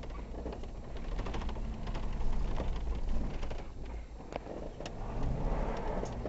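Off-road vehicle driving on a rough trail: a steady low engine rumble with scattered knocks and rattles, loudest about two to three seconds in.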